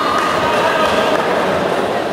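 Crowd noise in a large hall: many voices shouting and calling out together at a steady level.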